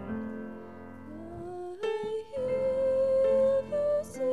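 Grand piano playing soft sustained chords, then a woman's voice comes in about a second in, gliding up, and holds one long note over the piano before stepping up near the end.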